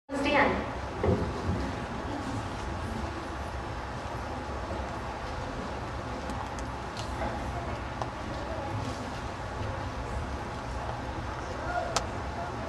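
Indistinct voices of children and adults chattering. The voices are louder in the first second or so, then settle into a steady low murmur.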